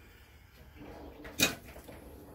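Faint handling rustle, then a single sharp clack of a hard object about a second and a half in.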